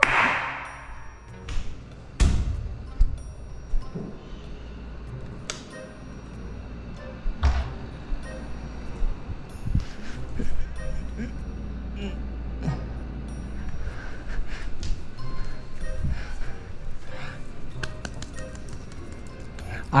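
Footsteps and handling noise of a body-worn camera as its wearer walks over tiled stairs and floor: irregular knocks and rustles over a low rumble.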